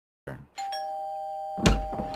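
Two-tone ding-dong doorbell chime: a higher note, then a lower one, both left ringing. A loud thump comes about a second and a half in.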